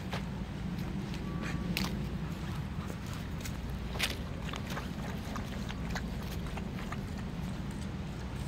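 Dogs playing in and around a plastic kiddie pool: scattered small splashes, paw steps and clicks, the sharpest about four seconds in, over a steady low background rumble.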